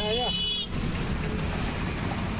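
A short, high-pitched vehicle horn beep in the first moment, then steady traffic and road rumble heard from inside a moving vehicle in city traffic.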